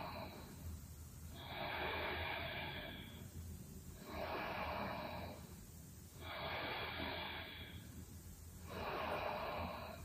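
A woman breathing slowly and audibly while holding a yoga pose: about four long, even breaths, each lasting a second and a half or so, with short pauses between.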